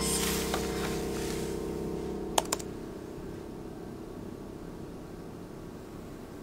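A few clicks from a laptop's keys, the sharpest two close together about two and a half seconds in, over a low, sustained music drone that fades away.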